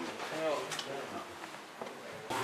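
Indistinct voices talking in the background, with a couple of short light clicks.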